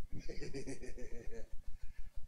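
A man laughing into a microphone: a quick run of pitched, quivering 'ha' sounds that stops about a second and a half in. A rapid low pulsing, about seven beats a second, runs under it.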